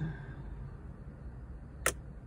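Low steady hum of a car interior, with a single sharp click near the end.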